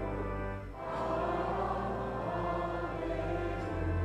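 Church organ with choir singing a hymn, the sustained chords carrying a deep bass; a brief break between phrases comes just under a second in.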